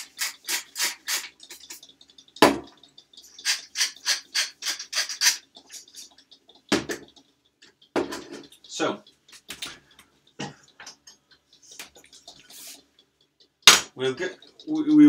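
Salt and pepper grinders turned over a bowl of beaten eggs in two runs of quick crunchy strokes, each run followed by a knock as the grinder is set back on the counter. A few small clicks follow, and near the end comes the loudest knock, a frying pan set down on the stovetop.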